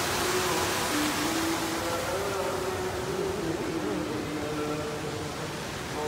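Steady rushing hiss of fountain water jets, with music playing over it: a slow melody of long held notes that step up and down in pitch.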